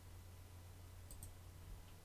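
Near silence over a low steady hum, with two faint computer-mouse clicks in quick succession about a second in.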